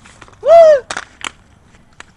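A boy's short, loud, wordless yell whose pitch rises and then falls, followed by two brief clicks.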